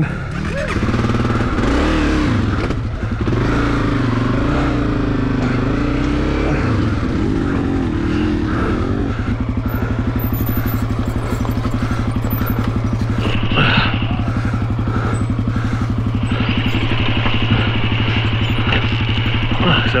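Honda CRF250F's single-cylinder four-stroke engine running at low revs while riding down a rough single-track, the revs rising and falling for the first half and then holding steady, with one sharp knock partway through.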